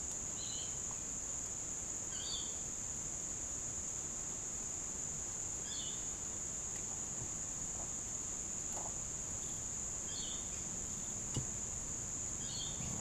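A steady high-pitched whine runs throughout. Over it come faint, brief scratchy sounds every few seconds and a small click near the end, from a thin piston ring being wound by hand into its groove on an outboard piston.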